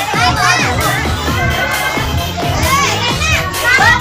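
A crowd of children shouting and chattering at once, many high voices overlapping, with music playing underneath.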